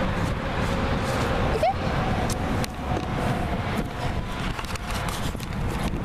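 Wind rumbling on the microphone and handling bumps as the camera is carried quickly over grass, with a faint steady tone behind.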